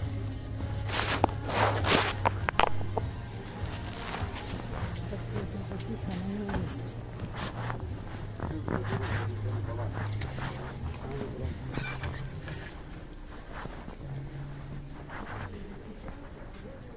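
Background music and voices in a clothing shop, with rustling and clicking from garments and hangers on a rack in the first few seconds.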